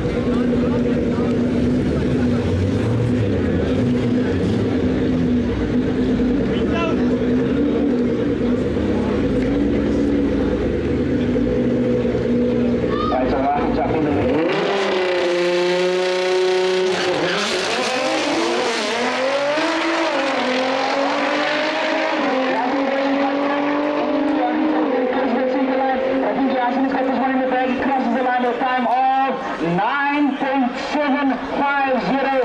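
Race car engines at a drag strip start line, running steadily with a deep rumble. About halfway through they rev up and accelerate hard, the pitch rising in steps through several gear changes.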